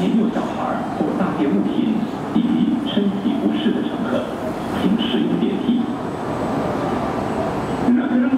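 An MRT train running on an elevated track as it approaches, heard alongside continuous voices of people talking nearby.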